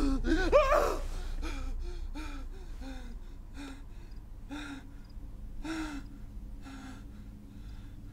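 A man gasping and whimpering in pain: short strained breaths, each with a low voiced catch, about one a second, growing fainter.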